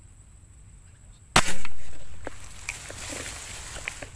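A single sharp shot from an air gun fired at a fish in the water, about a second in, the loudest sound here, fading over about a second. It is followed by rustling and small clicks as the gun is drawn back through the grass.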